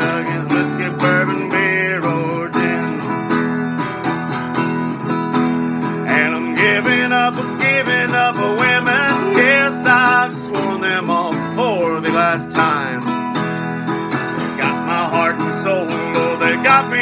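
Small-bodied vintage acoustic guitar strummed in a steady country rhythm, with a man singing over it in several phrases.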